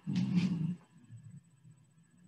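A short voice-like sound, under a second long, near the start, followed by quiet room tone.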